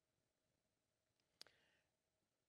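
Near silence, broken by a single faint click about one and a half seconds in: the slide-advance click as the presentation moves to the next slide.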